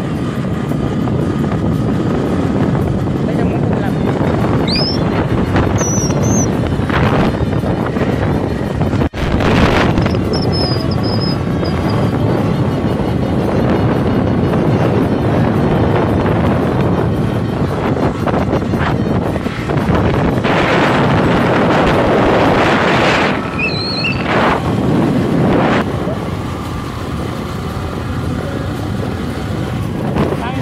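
Wind rushing over the microphone of a moving Hero motorcycle, with its engine running underneath: a steady, loud rush throughout.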